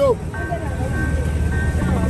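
Market background: several people talking indistinctly over a low, steady rumble, with a thin steady tone starting about a third of a second in.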